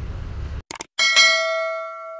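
Subscribe-button animation sound effect. A music bed cuts off, two quick clicks follow, and about a second in a notification-bell ding rings out and slowly fades.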